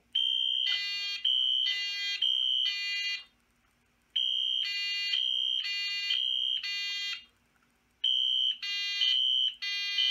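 Fire alarm horn on a test board sounding after a pull station is activated. It sounds in blocks of about three seconds that alternate a steady high beep with a buzzy honk, separated by pauses of about a second, three blocks in all.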